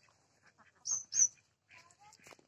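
A bird chirping twice, two short high-pitched chirps about a second in, over faint outdoor background.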